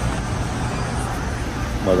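Steady low rumble and hiss of supermarket background noise, heard through a handheld phone camera as it moves along an aisle. A man's voice starts near the end.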